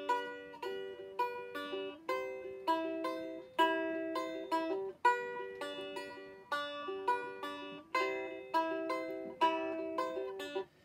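Appalachian strum stick played solo as an instrumental break: a picked melody of ringing notes, two or three struck each second, over a steady drone.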